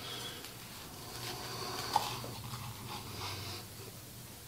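Chef's knife sawing through a grilled sourdough sandwich's toasted crust on a wooden cutting board, faint and scratchy, with one sharp tap about two seconds in.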